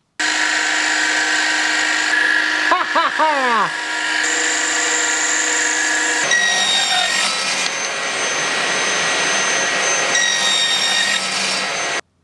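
Small metal lathe running with a steady whine as a cutting tool turns down a round wooden rod. The tone shifts several times, and about three seconds in it briefly falls in pitch.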